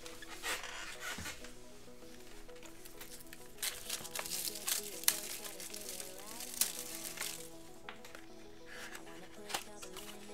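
A trading-card pack being opened by hand: the wrapper crinkles and tears and the cards rustle, in short bursts clustered from about three and a half seconds in. Steady background music plays underneath.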